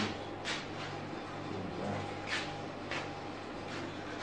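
Four brief rustles of a person moving and handling a paper tape measure, over a steady low hum.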